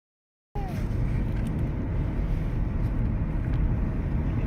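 Steady low rumble of a car driving, heard from inside the cabin, starting about half a second in.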